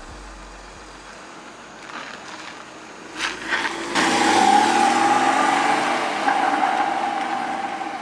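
Porsche Cayman sports car's engine pulling away. A short rev comes about three seconds in. About a second later the engine comes on loud as the car accelerates off, and the sound slowly fades as it drives away.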